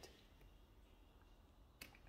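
Near silence: faint room tone, with one short faint click near the end.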